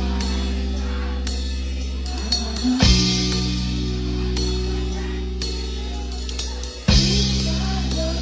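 Live band with a drum kit playing: two big accented hits with a cymbal crash about four seconds apart, the chords left ringing between them.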